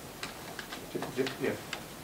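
A quick run of light clicks, about five in under a second, then a brief spoken "yeah".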